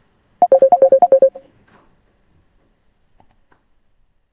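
A quick run of about ten short electronic beeps at two alternating pitches, lasting about a second.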